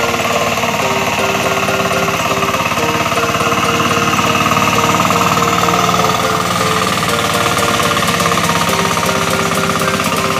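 Two-wheel hand tractor's single-cylinder engine running steadily under load with a rapid, even beat as its cage wheels churn through the flooded paddy mud.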